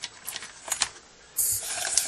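Handling noise: a few light clicks and knocks, then about a second and a half in a louder burst of hissy rustling and scraping as things are moved around.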